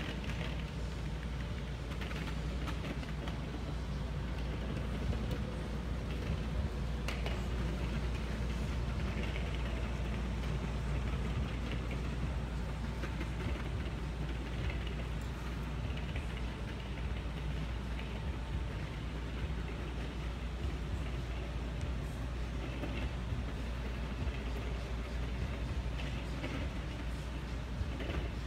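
Steady low rumble of background room noise with no distinct events, only a few faint clicks.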